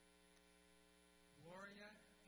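Near silence with a steady electrical mains hum; a voice starts speaking about one and a half seconds in.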